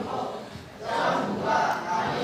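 A group of voices calling out together, a loud shout that starts about a second in and carries on to the end.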